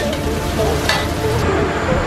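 Noodles sizzling in a hot steel wok, with a short metal clink about a second in.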